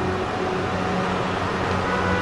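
Steady background hum and hiss with no clear events: the room tone of an amplified outdoor gathering, heard between phrases of speech.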